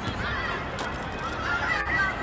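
Faint, distant high-pitched shouts of young footballers across the pitch, heard twice, over a low outdoor rumble.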